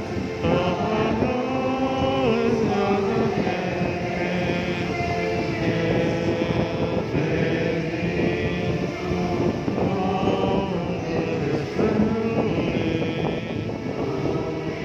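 Voices singing a slow hymn in long held notes.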